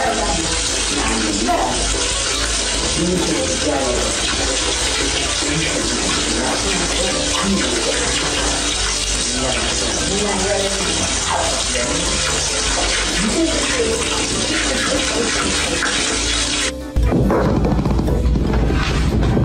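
Tap water running steadily into a bathtub, a continuous hiss, with voices over it. It cuts off suddenly near the end and music starts.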